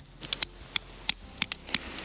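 Claw hammer tapping a tent stake into gravel: about eight light, sharp clicks at an uneven pace.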